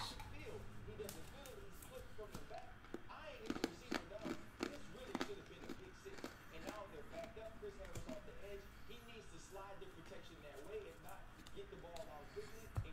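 A faint man's voice from a football commentary playing in the background, with scattered light clicks and taps of trading cards being shuffled by hand.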